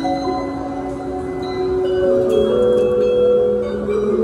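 A school drum and lyre corps' mallet section, bell lyres and xylophones, playing a slow passage of long, ringing held notes in chords, with no drumming.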